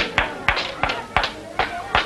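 Hard-soled shoes climbing stone stairs, sharp footsteps at about three a second.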